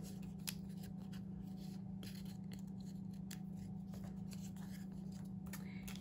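Faint scattered clicks and light rustles of paper and foam die-cut pieces being handled and pressed, over a steady low hum.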